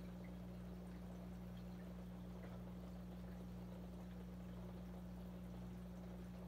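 Aquarium filter running: a faint, steady low hum with a light trickle of water.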